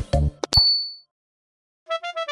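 The children's song ends on a few short beats, then a single bright ding rings out briefly: a cartoon notification-bell sound effect. After about a second of silence, a plinking keyboard melody of quick short notes starts near the end.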